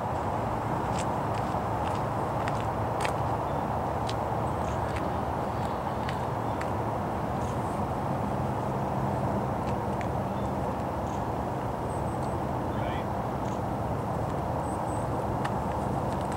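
Diesel locomotives of an approaching train heard from afar: a steady low rumble under an even hiss, with a few faint clicks.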